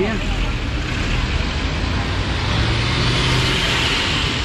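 An SUV passing close at low speed, its engine hum and tyre noise swelling towards the end, over steady street traffic noise.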